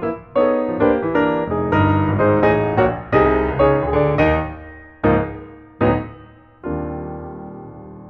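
Solo piano music: a gentle melody over chords that slows near the end to a few single struck chords, the last one left to ring and fade.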